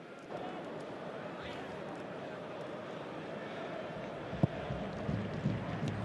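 Steady crowd noise from a football stadium, the murmur of a large crowd, growing slightly louder near the end. A single sharp knock sounds about four and a half seconds in.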